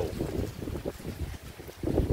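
Wind buffeting the microphone: an uneven low rumble that swells briefly near the end.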